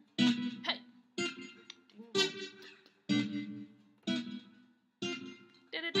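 Taylor GS Mini acoustic guitar playing a climbing minor seventh chord progression, each chord's strings plucked together once, about a second apart, and left to ring and fade.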